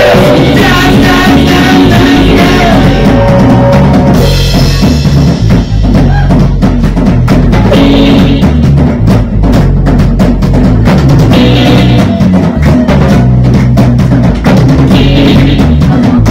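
A live rock band plays loudly: electric guitars and bass over a drum kit. From about four seconds in, the drums come to the front with fast, dense strikes and repeated cymbal crashes.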